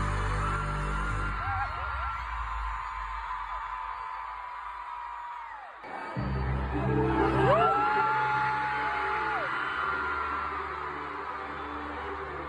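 Live pop concert in an arena heard from the stands: loud amplified music with heavy bass, and fans screaming over it in long, high held notes. The bass thins out about a second and a half in, then comes back after a sudden break about six seconds in, with more screaming.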